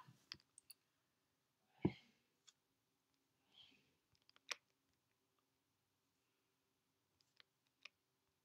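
Near silence: quiet room tone with a few faint, scattered clicks, the clearest a short knock about two seconds in.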